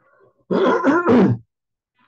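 A man's wordless groan, a pitched vocal sound that wavers up and down for about a second, starting half a second in.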